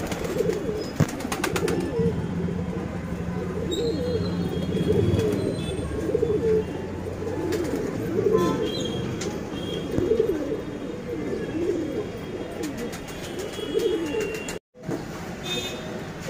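Domestic pigeons cooing over and over, a low rolling coo repeating about once a second. All sound drops out briefly near the end.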